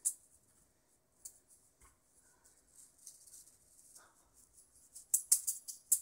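Juggling balls knocking and clicking in the hands: a few faint knocks in the middle, then a quick run of sharp rattling clicks starting about five seconds in as the balls are thrown and caught again.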